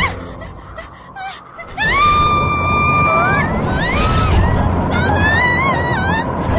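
A young girl's long, held scream starting about two seconds in, followed by several rising and falling frightened cries, over a steady rushing noise.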